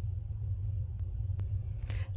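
A steady low background hum or rumble, with two faint clicks about a second in and shortly after.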